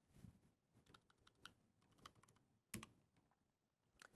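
Faint, irregular key clicks: a handful of separate presses, one every half second or so, the loudest about three seconds in, as a track name is typed in.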